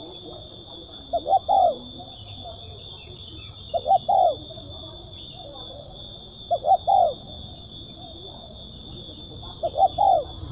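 Spotted dove cooing: four phrases, each two quick notes followed by a longer, falling coo, repeated about every two and a half to three seconds.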